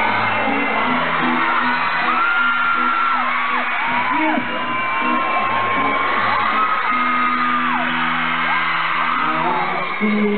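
Live pop-rock band playing with electric guitars, heard through a loud crowd of fans screaming and whooping in long, high cries.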